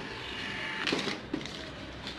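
Thermal receipt paper rustling as printed receipts are handled, with a couple of soft crinkles or clicks about a second in.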